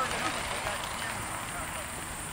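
Indistinct voices of people talking in the distance over a steady low outdoor rumble.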